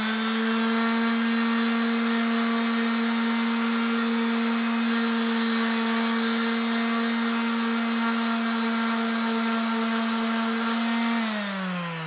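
Makita M9204 random orbit sander running at full speed, a steady motor hum, while an abrasive cleaning stick is held against its spinning 80-grit disc to clear the clogged finish dust from the paper. Near the end it is switched off and the hum falls in pitch as it winds down.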